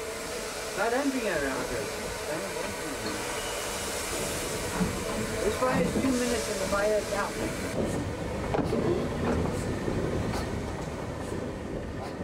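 Steady hiss of steam and running noise in the cab of a Cape Government Railways 6th Class steam locomotive, with faint voices in the background.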